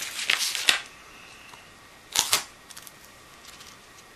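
Handling noise of an EPP foam plane and fiberglass strapping tape on a wooden tabletop: a few quick rustles and knocks in the first second as the foam plane is flipped over, then one short scrape about two seconds in and faint ticks as a strip of tape is picked up and put on.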